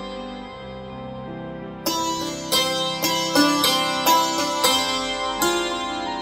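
Iraqi santur, a hammered dulcimer, playing a slow melody of struck notes that ring on. It sustains quietly for the first two seconds, then comes a run of about eight sharper strikes.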